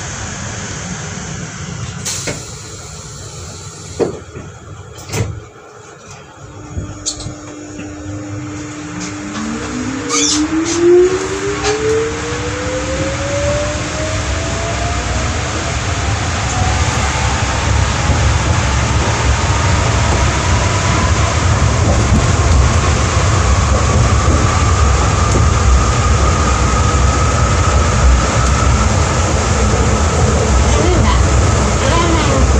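Inside a New Shuttle 1050-series rubber-tyred people-mover car standing at a station, with a few sharp knocks in the first dozen seconds. Then it pulls away: from about nine seconds in, the traction motor's whine climbs steadily in pitch as the car accelerates, and the running rumble grows louder.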